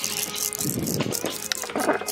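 Fishing reel clicking rapidly as a fish is hooked on the trolling line, with background music.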